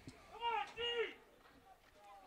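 A high-pitched voice shouting two short calls across the field, distant.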